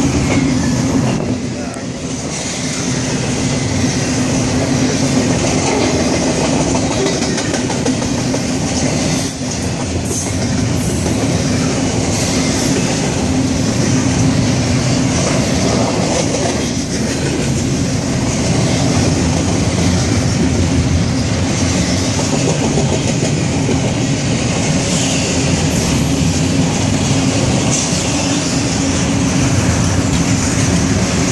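Double-stack intermodal well cars of a freight train rolling steadily past, steel wheels running on the rails with a clickety-clack.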